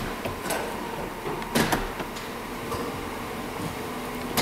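Column gear shifter of a 2011 GMC Sierra being moved out of park and back, a clunk about one and a half seconds in and a few lighter clicks, over a low steady hum. The shift interlock now releases with the brake applied.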